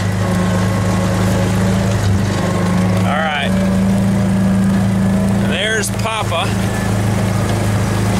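Kubota utility vehicle's engine running at a steady pace while driving, a constant low hum. A few short rising-and-falling high-pitched squeals sound over it, about three seconds in and again around six seconds.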